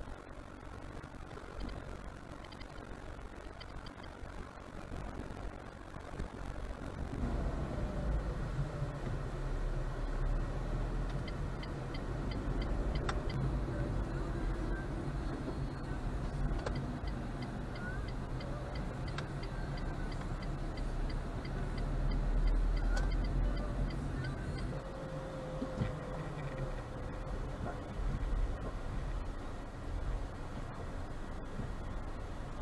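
Car interior noise picked up by a dashcam: a low engine and road rumble, quieter for the first several seconds, then louder from about seven seconds in as the car drives. A run of even, faint ticking comes through for a few seconds in the middle.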